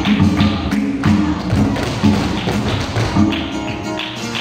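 Flamenco music with the dancers' shoes striking the floor in zapateado footwork: many sharp taps over the music.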